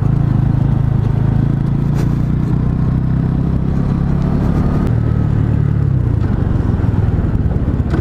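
Engine of a 125cc Sinnis Outlaw motorcycle running steadily at low road speed as it is ridden, heard from the rider's position; the engine note shifts lower about six seconds in.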